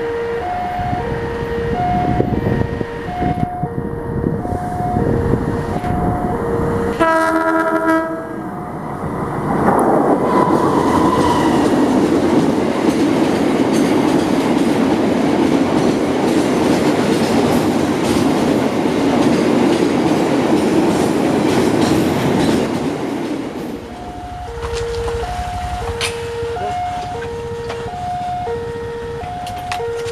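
A level-crossing warning alarm sounds two alternating tones over and over. A diesel locomotive's horn blasts briefly about seven seconds in. From about nine seconds in, a long train of tank wagons rolls past close by, loud and continuous for about fourteen seconds, before the alternating crossing alarm is heard again near the end.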